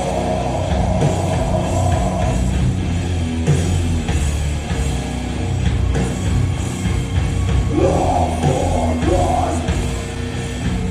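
A live rock band playing loud, with electric guitars, bass and drums; a guitar line stands out near the start and again near the end.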